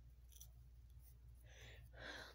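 Near silence: room tone with a steady low hum, and a faint soft noise near the end.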